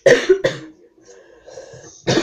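A boy coughing, two loud coughs in quick succession right at the start, followed by quieter throat and breath sounds.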